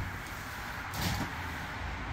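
Low steady hum, with a soft noise about a second in as a tall French-door refrigerator door is pulled open.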